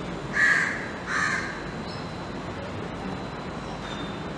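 A bird calling twice in quick succession: two short, harsh calls well under a second apart.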